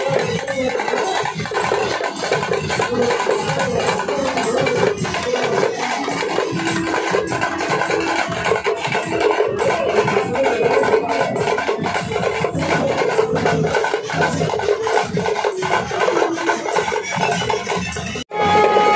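Music with fast, dense drumming and a wavering melody line over it.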